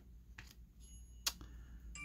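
Glossy trading cards handled in a stack: faint ticks as a card is slid across the others, with one sharper click a little past the middle.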